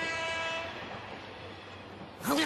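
Train sound effect: a passenger carriage running steadily, heard from inside. A held tone fades out in the first second.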